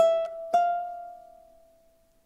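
Ukulele picked fingerstyle with single melody notes from the fifth-fret position over a G minor chord shape. Three notes come in the first half second, and the last one rings on and slowly fades away.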